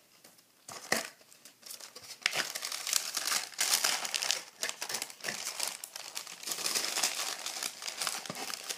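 Tissue paper crinkling as hands fold it over packaged snacks in a cardboard subscription box: a single crackle about a second in, then dense, continuous crinkling from about two seconds on.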